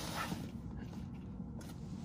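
Faint handling noise of a cardboard collector's box being brought in and set down on the floor, dying away within the first half second into quiet room tone.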